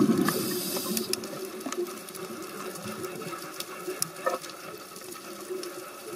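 Underwater sound: a loud rush of exhaled scuba bubbles at the start, fading within about two seconds, then a steady underwater crackle of scattered sharp clicks.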